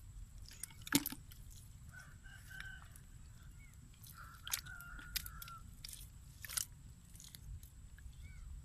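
Hands working in wet mud, with soft squelches and a few sharp clicks, the loudest about a second in. A bird calls in the distance twice near the middle, each call held briefly.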